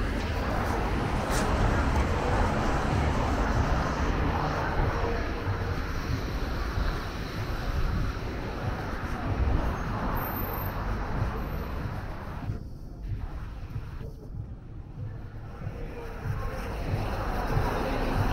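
Street traffic noise, a steady low rumble of passing cars, quieter for a few seconds after the middle and building again near the end.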